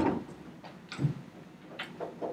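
A few sharp knocks and clicks in a room: the loudest right at the start, a duller thump about a second in, and another click near the end.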